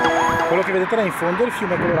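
Background electronic music ending about half a second in, followed by a man speaking in Italian.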